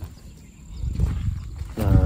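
Low rumble of wind buffeting the microphone during a pause in speech, building about half a second in; a man's voice starts again near the end.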